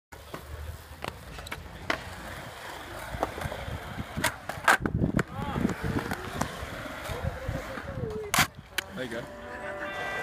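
Skateboard wheels rolling on concrete, with several sharp clacks of boards hitting the ground, the loudest about eight seconds in. Voices talk in the background.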